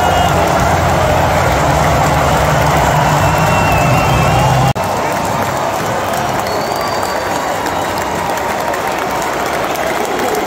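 Large football stadium crowd: a loud, continuous din of many voices. There is an abrupt break about halfway through, after which the crowd sounds a little quieter and less deep.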